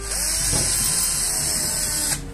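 Cordless drill running into a wooden board, starting abruptly and spinning up with a brief rise in pitch, then held at a steady high whine for about two seconds.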